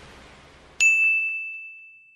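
A logo sound effect: a single bright, bell-like ding struck a little under a second in, ringing on one high tone and fading away over about a second and a half.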